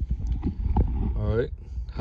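Small cardboard and plastic packaging being handled and opened: scattered light clicks and rustles.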